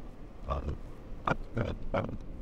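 Faint wind and riding noise on a lapel microphone while riding an electric scooter, with three or four short, sharp sounds close to the mic.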